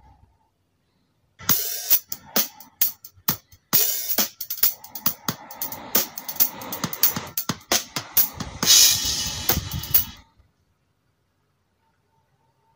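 Drum kit played in a fast, irregular run of sharp hits with hi-hat and cymbals, and a louder cymbal wash near the end. It starts about a second and a half in and cuts off abruptly about ten seconds in.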